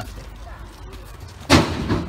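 A single loud thump about one and a half seconds in, dying away over about half a second, over a low steady outdoor background.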